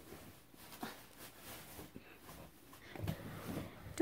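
Plastic trash bag rustling and crinkling in soft, scattered bursts as it falls, a little louder about three seconds in.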